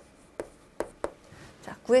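Chalk on a chalkboard writing out digits: about four short, sharp taps and scrapes of the chalk stick against the board.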